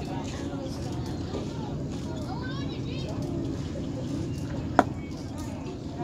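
Faint voices of baseball spectators over a steady outdoor rumble, with one sharp crack about five seconds in: the impact of a pitched baseball.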